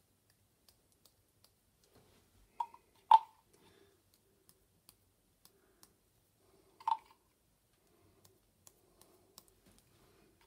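A paintbrush tapped to flick white paint splashes onto a painted wooden tag: a few sharp taps, two close together a few seconds in and one more a few seconds later, with faint small ticks in between.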